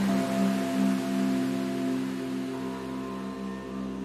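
Meditation music of sustained crystal singing bowl tones, one low tone pulsing steadily, over a soft hiss; a higher tone joins about two and a half seconds in.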